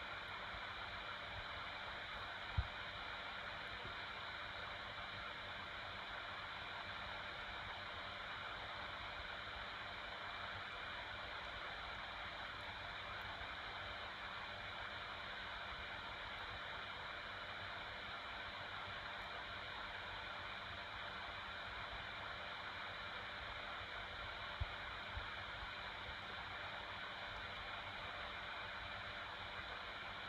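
Steady hiss of microphone and room noise, with a faint low thump about two and a half seconds in and two smaller ones near the end.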